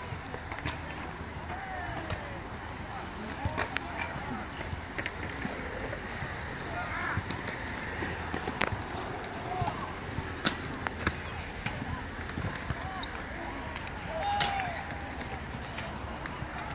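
Outdoor skatepark ambience: distant voices and short calls of people, with scattered sharp knocks and clacks of BMX bikes and scooters landing and rolling on concrete.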